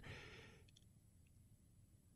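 Near silence, after a faint breath that fades out within the first half second.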